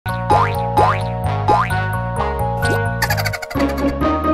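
Bouncy children's intro music with several springy, upward-sliding boing sound effects. About three seconds in, a brief fizzing rush breaks in, then the music drops out for a moment before a new phrase starts.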